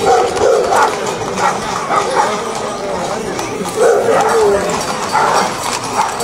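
Horses' hooves on a paved street under a crowd's chatter, with several short barks from a dog.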